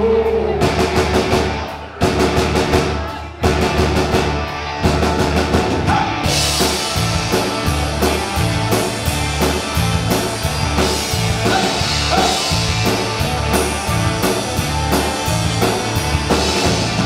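Rock band playing with electric guitars, bass and drum kit. The music breaks off and comes back in sharply twice in the first few seconds, then settles into a steady driving drum beat.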